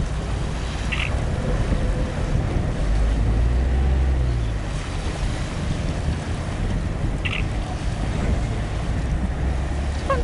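Wind rumbling on the camcorder microphone over a steady waterfront background, with a stronger gust about three seconds in that eases off a couple of seconds later.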